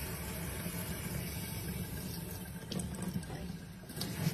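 Water from a kitchen mixer tap running steadily into a stainless steel sink, with a few light clicks about three seconds in.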